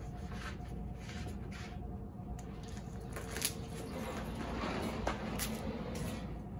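Rustling and light crinkling of vinyl sign sheeting and its backing liner being handled and rolled on a sign application table, with a few short clicks in the second half.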